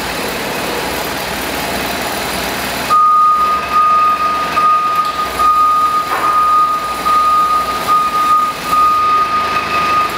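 Doosan D33S diesel forklift engine running, then about three seconds in the engine note drops back and the reversing alarm starts, a loud steady high beep that continues as the truck backs its forks out of a pallet.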